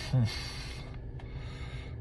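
A man's short, thoughtful "hmm", then a steady low background hum inside a car cabin, with a faint click about a second in.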